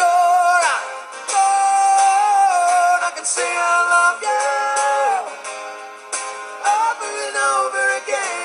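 Male singer holding long notes over a strummed acoustic guitar, each note sustained for a second or two before moving to the next.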